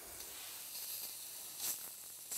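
Chicken breasts sizzling faintly on a ridged grill plate that has been switched off and is cooking on residual heat: a steady, thin, high hiss, with one short louder burst near the end as metal tongs touch the meat.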